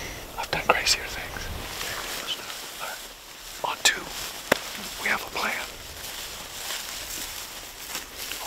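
Soft, low-voiced speech in short snatches, with a single sharp click about four and a half seconds in.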